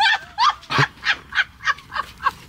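A woman laughing in a run of short bursts, about three a second.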